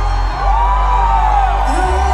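Live R&B/pop song played loud through a concert hall's PA: steady bass notes under a high voice that slides up into a long arched note about half a second in and falls away, with the bass line changing near the end.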